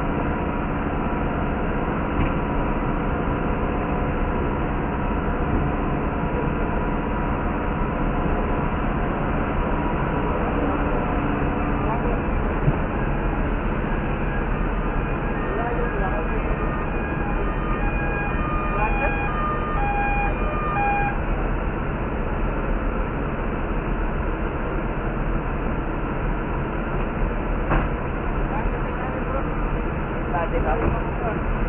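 Idling fire truck diesel engines: a steady drone with a steady hum of several tones. From about halfway in, a run of short electronic beeps sounds for several seconds.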